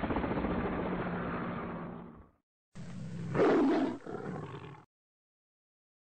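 Logo-sting sound effects in two short bursts. The first is a dense, roar-like rumble that fades out after about two seconds. The second starts about half a second later, swells loudly in the middle and cuts off suddenly into dead silence.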